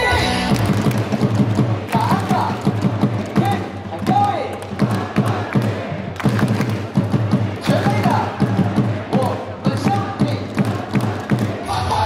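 A baseball player's cheer song played loud over the stadium PA: a driving, thudding beat with voices over it.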